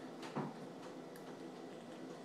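A single short click and soft knock from the handheld box mod being handled, over a faint steady room hum.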